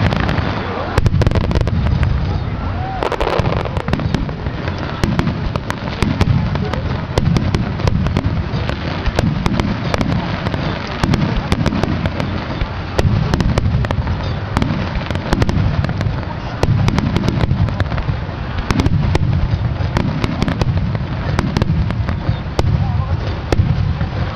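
Starmine fireworks display: aerial shells bursting in rapid succession, with deep booms coming about once a second and many sharp crackling reports in between.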